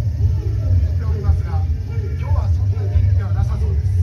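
A voice over outdoor loudspeakers, with a heavy, steady low rumble underneath it.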